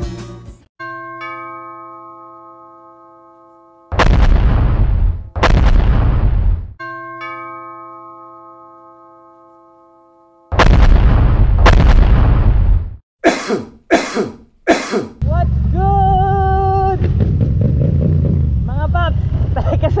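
Edited intro sound effects: a chime that rings and slowly fades, twice, with loud heavy booms between them and a quick run of short hits. About fifteen seconds in, a Yamaha MT-07 parallel-twin motorcycle engine takes over, running on the road.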